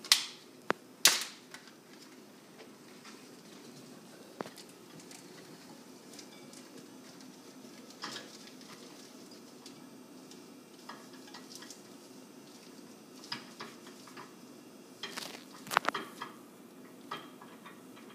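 Plastic zip-top bag crinkling and being handled, with short sharp rustles and clicks just at the start and again in a cluster near the end, over a faint steady room hum.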